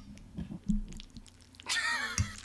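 Person's voice laughing: a short, faint laugh about half a second in, then a louder, high-pitched laugh starting near the end.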